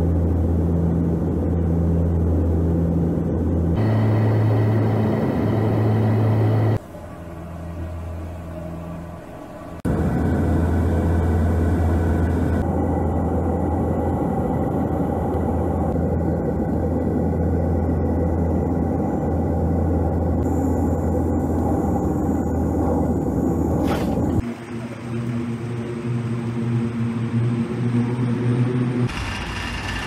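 Steady, loud drone of a turboprop airliner's engines and propellers heard from inside the cabin in flight, with a low hum; the sound shifts abruptly several times at edits and turns lighter and thinner near the end.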